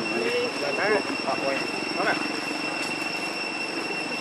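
Outdoor ambience with a steady, high-pitched two-tone insect drone, and a few brief vocal sounds in the first half.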